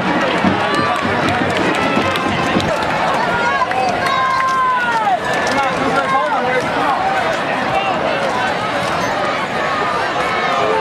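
Football crowd in the stands: many voices shouting and calling at once over a steady background din.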